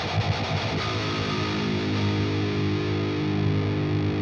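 Electric guitar played through the Fortin Nameless amp plugin's low-gain channel, a mildly distorted tone: quick picked notes for about the first second, then a chord left ringing.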